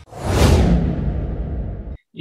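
Whoosh transition sound effect: a sudden loud burst of noise whose high end fades away over a second or so, cut off abruptly just before the end.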